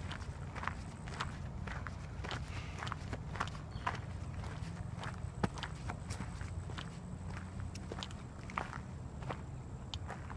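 Slow, uneven footsteps crunching on a gravel road.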